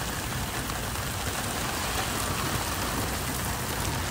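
Heavy rain pouring down steadily, a constant even hiss of drops hitting the ground.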